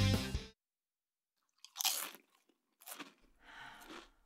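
A music sting cuts off in the first half-second. After a short silence comes loud crunching from a person chewing something crisp: three crunches, the last one drawn out.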